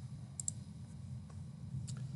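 A few faint clicks, a close pair about half a second in and another near the end, over a low steady hum of room tone.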